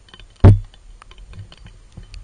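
A single loud knock about half a second in, typical of a waterproof camera housing bumping against rock, over a steady scatter of small irregular clicks and ticks.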